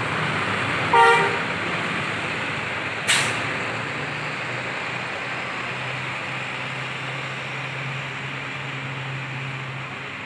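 Large intercity bus engine running steadily with a low hum. A short horn toot comes about a second in, and a brief sharp hiss about three seconds in.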